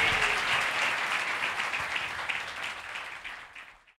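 Audience applauding, the clapping gradually fading away to silence near the end.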